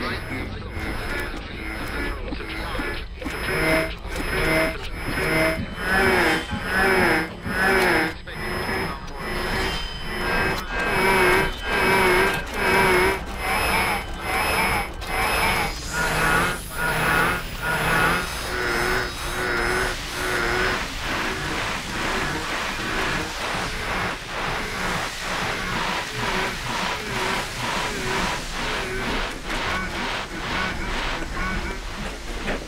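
Experimental oud music mixed with shortwave radio: a wavering, warbling voice-like radio signal over a steady pulsing rhythm.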